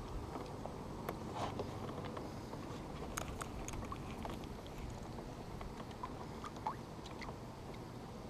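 Baitcasting reel being cranked to retrieve the line, giving a few faint, irregular clicks and ticks over a low, steady background rumble.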